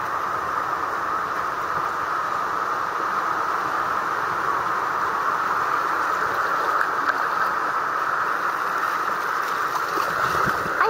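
Ocean surf breaking and washing up the shore, a steady rushing noise with no breaks.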